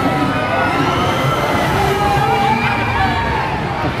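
Riders on a swinging pendulum thrill ride screaming and yelling, several voices overlapping in long, wavering screams over the steady din of the ride.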